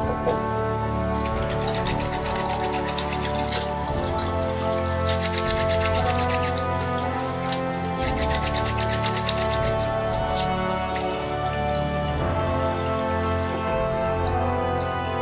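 Background music over the rapid, scratchy rubbing of hands being scrubbed with gritty pumice hand cleaner at a sink, with the tap running. The scrubbing stops about two seconds before the end.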